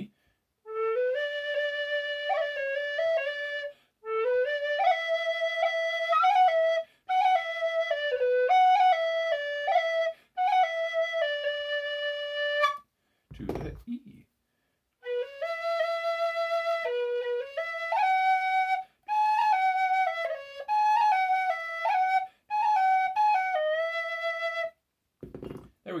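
Penny whistle playing a short phrase of quick melodic stabs in D on a low-pitched A whistle, then, after a short break about halfway, the same phrase a step higher in E on a Generation B-flat tin whistle cut down to B.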